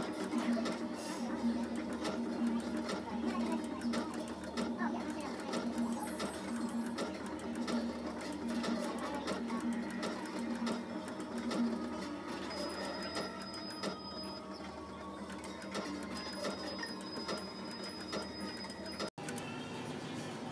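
Video skill-game machine playing out its free-play bonus round: electronic reel-spin sounds and game music in a repeating pulse, easing off about twelve seconds in, with a thin steady high tone in two stretches after that.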